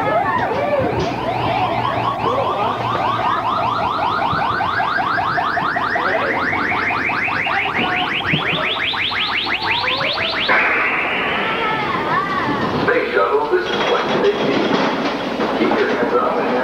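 Space Mountain's lift-tunnel sound effect: a rapid pulsing electronic tone, about six or seven pulses a second, climbing steadily in pitch for about ten seconds and then stopping, over a low hum. Riders' voices are heard, and near the end the coaster train rumbles on its track.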